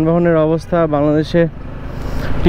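A man talking, over the low running and road noise of a Suzuki Gixxer motorcycle riding slowly through city traffic.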